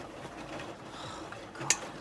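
Front-loading washing machine running steadily mid-cycle while leaking water from its door, which the family takes for a failed door seal.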